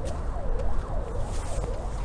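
A faint siren sliding down and up in pitch about twice a second, over a steady low rumble.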